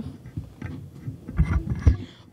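A few low thumps close to a microphone, about a second and a half in, after a stretch of faint clicks and rustle.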